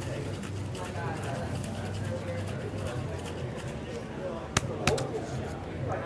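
Cocktail shaker being dry-shaken without ice, the egg-white mixture sloshing inside the metal tin. Two sharp clicks come near the end, about half a second apart.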